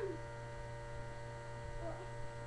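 Steady electrical hum with several thin steady whine tones above it. A short falling pitched call trails off at the very start, and a faint one comes near the end.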